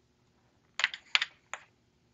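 Small sample jars clicking and clattering against each other as one is picked out of a row, a few short clicks in the second half.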